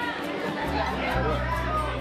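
Many voices chattering at once in a large hall, with music underneath.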